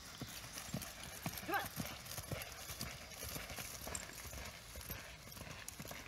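Faint, rhythmic hoofbeats of a ridden horse cantering on grass and packed dirt.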